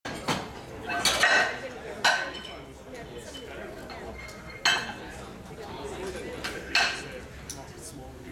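Sharp metallic clanks and clinks of Eleiko competition plates and collars being loaded onto a barbell, several at irregular intervals, over a background of crowd chatter.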